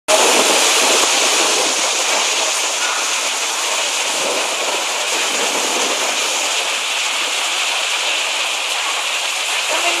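Heavy rain pouring down steadily: a dense, even downpour with no let-up.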